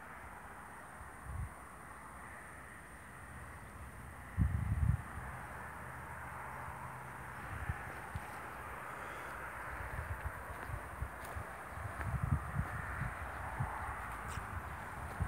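Steady hum of honeybees around the wooden hives. Low thumps of wind or handling on the microphone come and go; the loudest is about four seconds in, with more near the end.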